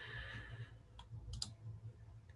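Quiet room tone with a steady low hum, a faint hiss at the start, and a few soft clicks about a second in and again around a second and a half.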